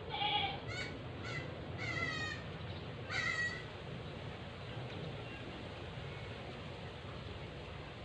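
Goat bleating about five times in quick succession, short quavering calls that stop about three and a half seconds in.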